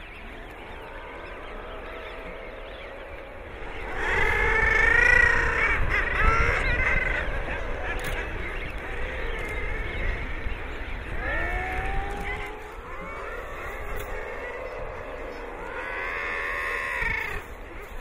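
Seabirds calling at a nesting colony in three stretches. The loudest calls come about four seconds in, with more around eleven seconds and near the end, over a steady low rumble.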